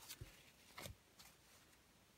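Near silence, with a few faint clicks of cardboard baseball cards being thumbed through by hand, the clearest just under a second in.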